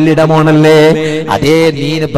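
A man's voice chanting in long, drawn-out melodic phrases, over a steady low hum.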